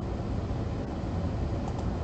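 Steady low hum with an even hiss underneath: background room noise on the recording, with no distinct events.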